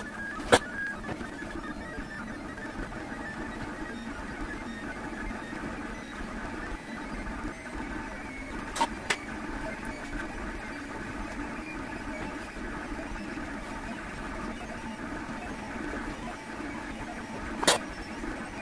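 LulzBot TAZ 6 3D printer's stepper motors and fans running through a print, a steady dense whirring and chatter. Sharp clicks cut through it about half a second in, twice near the middle, and once near the end.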